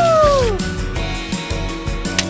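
Background music with a steady beat, with a pitched sound effect that slides down in pitch and fades out in the first half second.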